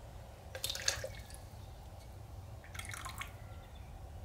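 Liquid glaze sloshing inside a bisque-fired ceramic tumbler and being poured out into a container, faint dripping and trickling in two short spells, about a second in and again around three seconds in.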